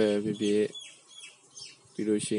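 A man's voice reading a story aloud in Burmese for about the first half-second, then a second or so of faint, short, high chirps.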